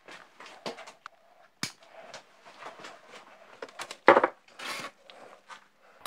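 Scattered light clicks, knocks and rustling of things being handled and moved, with a sharp click about a second and a half in and a louder knock around four seconds in.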